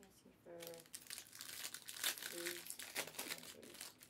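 Trading-card pack wrappers crinkling as hobby packs are handled and opened: a dense run of crackles that starts about half a second in and goes on until near the end.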